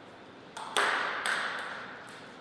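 Table tennis ball bouncing several times, sharp little clicks that come quicker and fainter after the loudest one, each with a short ring in the hall.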